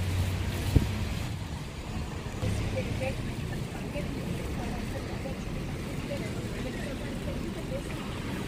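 Busy street ambience on a wet road: steady traffic noise with a vehicle engine rumbling low in the first second or so and again briefly a little later, a single sharp click about a second in, and faint voices of passers-by.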